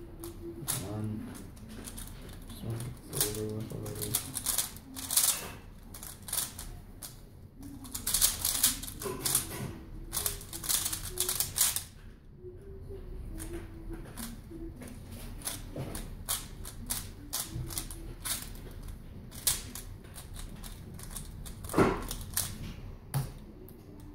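A plastic Valk Power 3x3 speedcube being turned by hand, its layers clicking in quick irregular runs as it is scrambled. A single louder knock comes a couple of seconds before the end.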